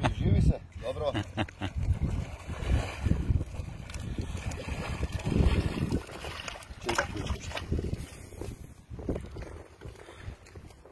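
Water splashing and sloshing around a person's legs as he wades through shallow river water and steps out onto the bank, with wind buffeting the microphone.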